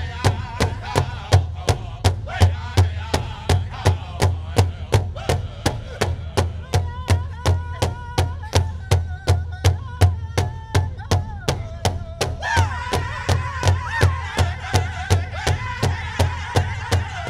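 Powwow drum group: several men beating one large rawhide-covered drum in unison at a steady beat of about three strokes a second, singing together over it. About twelve and a half seconds in, the singing jumps to a higher pitch.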